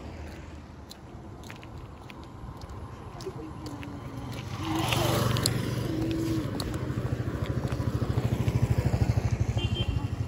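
A motor vehicle's engine on the road, its rumble and tyre rush growing louder from about halfway through as it comes close.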